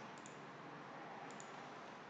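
Two faint computer mouse clicks about a second apart, over a low steady hiss of room noise.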